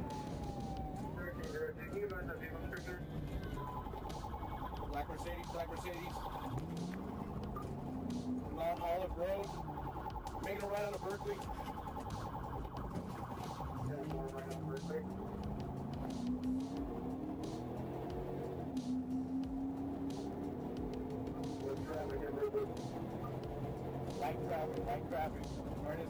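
Police car siren sounding through a pursuit, its pitch gliding and warbling, with voices over it.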